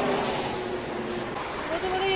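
Street traffic: a passing vehicle's engine and tyre noise slowly fading, with a voice starting near the end.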